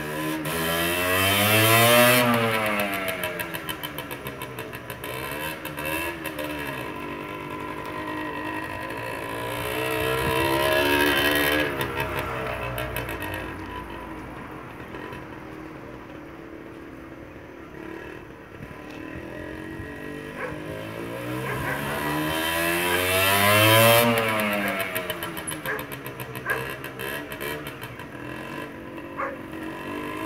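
Small dirt bike's engine being ridden, revving up and dropping back in long swells. It is loudest and highest-pitched about two seconds in, again around eleven seconds and near 24 seconds, and quieter in between.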